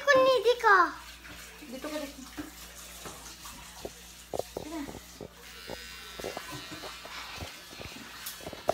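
A child's high voice calls out briefly at the start. Then comes a string of short knocks and clicks over a faint steady hum, from the phone being handled and carried.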